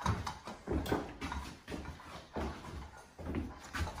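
Footsteps of a person walking across a bare, unfinished floor: an uneven run of dull thuds and scuffs.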